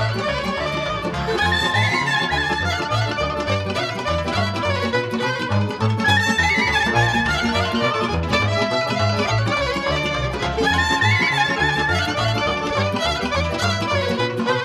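Romanian folk band playing the instrumental introduction to a song: a violin melody over accordion and a steady bass beat.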